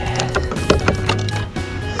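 Dashcam power cable being pulled and handled against the plastic lower dash trim, giving several sharp clicks and knocks over background music.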